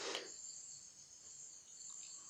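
Faint, steady high-pitched trilling of crickets in the background, with little else.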